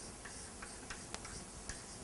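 Chalk writing on a blackboard: a few faint, light taps and scratches of the chalk, the clearest a little past halfway through.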